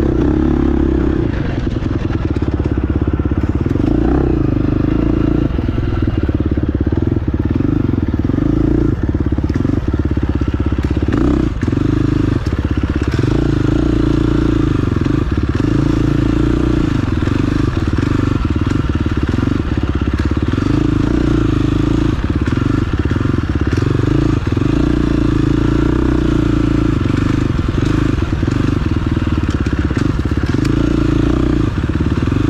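Engine of an off-road race machine being ridden hard, revving up and down over and over, with frequent short knocks and rattles from the rough trail.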